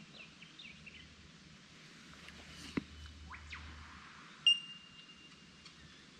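Faint bird chirps, then a sharp metallic clink about four and a half seconds in that rings on as a clear tone for over a second, like a utensil striking a small metal camping pot.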